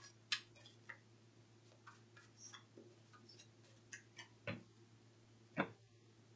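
Tarot cards being handled and shuffled by hand: faint scattered clicks and taps of card against card, with two louder taps near the end.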